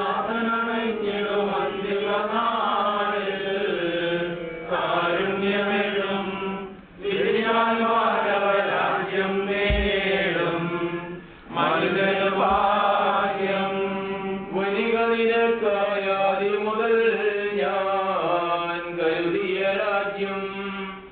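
A man's voice chanting a liturgical prayer in long, melodic phrases, breaking off briefly twice for breath.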